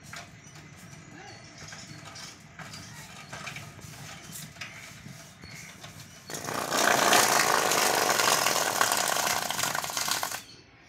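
Bicycle rear wheel spinning with its freewheel ticking softly. About six seconds in, a loud, rough scraping starts as a block of polystyrene foam is pressed against the turning wheel and shredded into crumbs, and it cuts off suddenly near the end.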